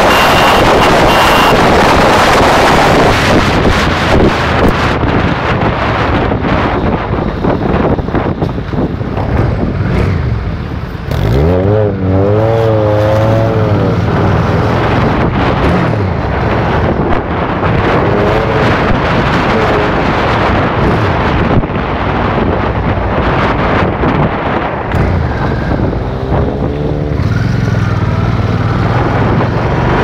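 A vehicle's engine running at road speed under heavy wind buffeting on the microphone. The wind rush is strongest in the first few seconds; about twelve seconds in the engine note sweeps up and wavers for a couple of seconds, and it wavers again near the end.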